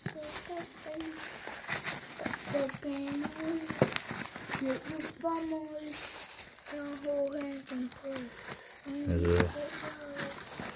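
Plastic candy wrappers and a plastic bag crinkling and rustling as candies are pushed into a tissue-paper piñata. A high-pitched voice makes short wordless sounds over it.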